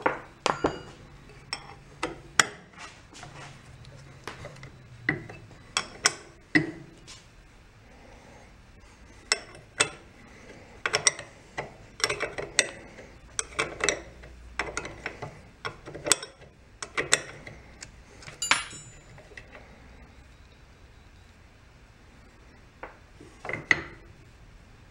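A steel wrench clicking and clinking against the hex plugs of a pressure washer's pump head as they are loosened: scattered sharp metallic clicks, busiest in the middle, with a lull of a few seconds near the end.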